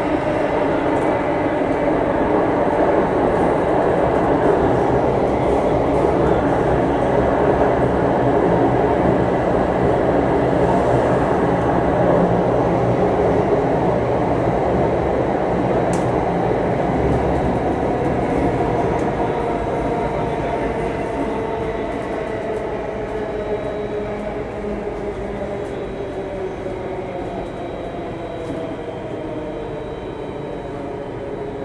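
Inside a Singapore MRT Circle Line train running underground: a steady rumble of wheels on rail with a motor whine that falls in pitch and fades over the last third as the train slows for the next station.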